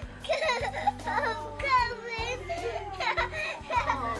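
Young children's voices and an adult's speech in a room, over background music, with one high, wavering child's voice about two seconds in.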